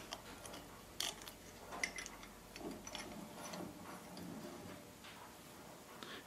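Faint, scattered clicks and light scraping of a plastic lighter being seated in a steel bench vise and the vise screw being turned to press a refill valve into its base, the sharpest click about a second in.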